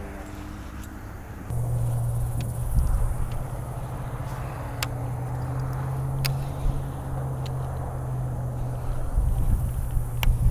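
A small boat's motor running with a steady low hum that starts about a second and a half in, with a few sharp clicks over it.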